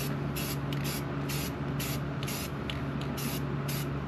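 Aerosol rattle can spraying white enamel paint onto a car wheel rim, hissing in a run of short passes, about two or three a second, over a steady low hum.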